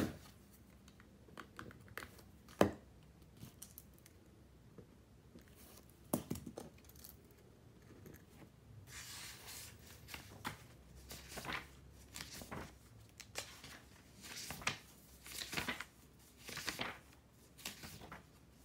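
Paper sounds at a desk: a few sharp taps and clicks, then from about halfway a run of short scratchy, rasping strokes on paper, roughly one a second.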